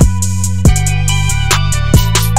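Trap-style hip hop instrumental beat at 140 BPM in E major: low sustained bass notes stepping between pitches under drum-machine hits, with a held melodic synth layer on top.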